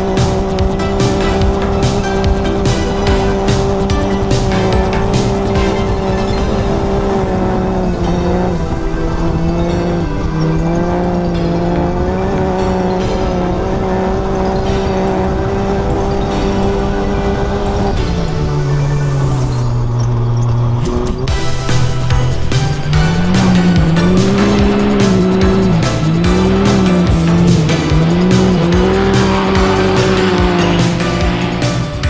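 Can-Am Maverick X3's turbocharged three-cylinder engine at full throttle, held at one steady high pitch for a long stretch, with constant clicking and rattling over it. A little past halfway the pitch drops as it backs off. It then rises and falls in quick swells as the car is thrown through a slide.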